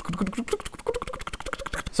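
Rapid small plastic clicks and taps of blue mechanical keyboard switches being pushed into a bare GH60 PCB.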